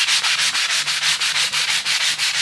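Abrasive sanding sponge scrubbed rapidly back and forth over a wet, soapy wooden furniture top, an even run of scrubbing strokes several times a second.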